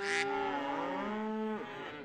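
Cow mooing sound effect: several overlapping low calls gliding down in pitch, fading out about three-quarters of the way through.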